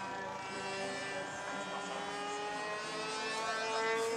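Radio-controlled model airplane's motor and propeller droning steadily in flight. The pitch rises slightly and the sound grows a little louder near the end as the plane comes closer.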